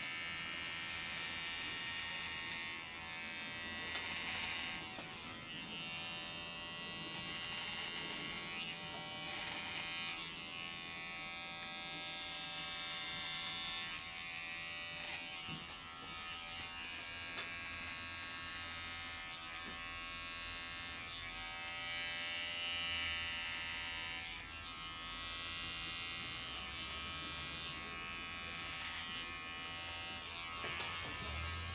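Cordless electric hair clipper buzzing steadily as it is run through a man's beard, its sound swelling and easing every few seconds with each pass.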